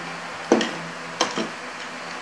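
Plastic Lego bricks clicking and knocking together on a tabletop: a sharp click about half a second in, then two more close together a little after a second.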